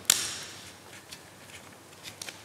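A sticker being peeled off its plastic backing sheet: one short, sharp rip right at the start that fades within about half a second, then a few faint ticks of handling.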